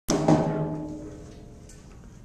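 Two sharp knocks close together on something resonant, then a ringing tone that fades away over about a second and a half.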